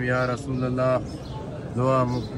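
A man's voice chanting Arabic salutations on the Prophet in long, drawn-out phrases. One phrase fills the first second, and another begins near the end.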